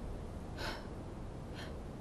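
A woman's soft breaths: two short, faint intakes of breath, one about half a second in and one near the end, just before she speaks.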